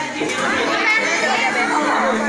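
Several people talking over one another: overlapping chatter with no one voice clear.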